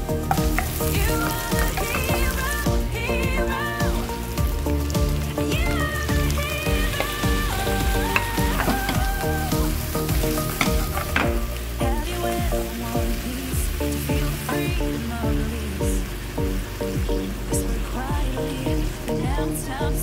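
Chopped onion and garlic frying in hot oil in a nonstick pan, with stirring. About halfway through, shrimp, squid and mussels are tipped in and sizzle along, over background music.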